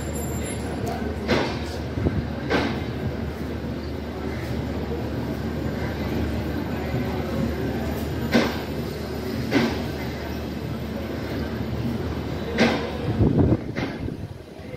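Passenger train coaches rolling slowly past with a steady rumble. The wheels clack over a rail joint in pairs about a second apart, a few times.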